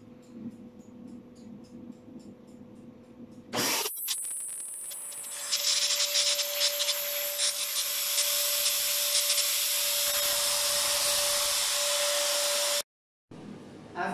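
Electric cold fogger switched on about three and a half seconds in: its blower motor runs loud and steady with a single whining tone over rushing air as it sprays disinfectant mist. The sound cuts off suddenly near the end.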